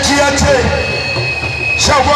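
A man's voice calling out over a loudspeaker, with a steady high tone held through the middle before the voice comes back near the end.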